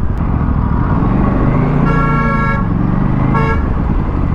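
Aprilia RS 457 parallel-twin engine running at low speed in traffic, its pitch easing as the bike slows. A vehicle horn honks twice: a longer blast about two seconds in and a short one near the end.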